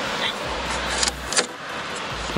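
A number plate being handled and pressed into a car's plate holder: two sharp clicks, about a second in and again a moment later, over a steady noise.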